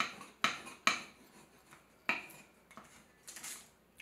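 Large wooden spoon rubbed over packing tape on a wooden tabletop, burnishing the tape down onto a printed image for a tape transfer: a few sharp knocks and scrapes as the spoon strokes, then a longer rasping rub near the end.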